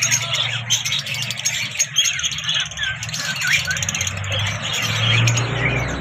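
A cage of lovebirds chattering: many short, high chirps and squeaky calls overlapping continuously. A low hum runs underneath and grows louder near the end.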